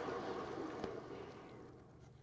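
Paint-pouring spinner turntable coasting down after being spun, its bearing giving a rushing whir that fades away as it slows, with one small click about a second in.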